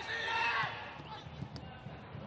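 Match sound from a football pitch: a player's shout in the first moments, then a couple of short thuds of the ball being kicked or bouncing.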